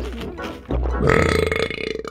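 A cartoon character's long, rough burp: a low rumbling start, then a higher held belch from about a second in.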